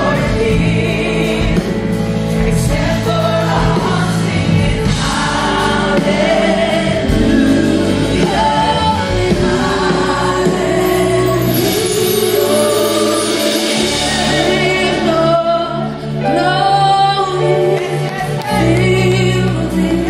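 Live gospel worship music: a worship leader and backing singers with a band that includes bass guitar and keyboard, many voices singing together. The bass drops out for a few seconds past the middle and comes back near the end.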